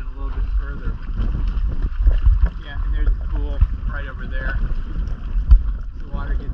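Wind buffeting the microphone in a gusty low rumble on an open dinghy, with faint voices now and then.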